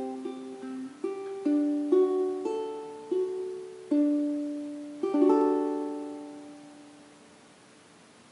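Solo ukulele playing the closing bars of a song, single picked notes and chords. A final chord about five seconds in rings out and fades away.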